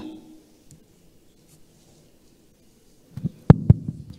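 Faint room tone, then a few seconds in a short cluster of low thumps and knocks, the loudest two close together: a corded handheld microphone being picked up and handled before speaking.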